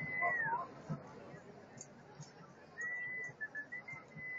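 A high, thin whistled note is held and then slides downward about half a second in. Another steady note comes around three seconds in, then a couple of short pips, and a new held note starts near the end, all faint over a low murmur.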